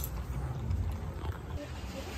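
Labrador puppy eating dry kibble from a stainless steel bowl, with faint irregular crunches and clicks over a low rumble.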